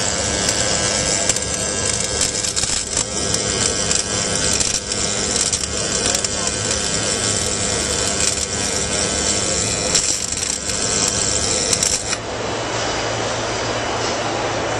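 Welding arc crackling steadily for about twelve seconds, then cutting off suddenly to the chatter of a large indoor crowd.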